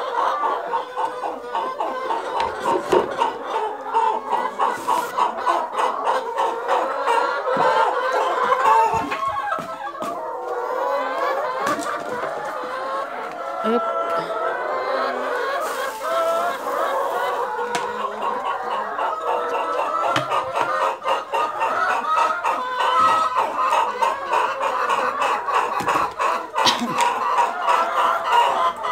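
A flock of brown laying hens clucking and calling together, many overlapping calls without a break, with scattered light clicks and knocks among them.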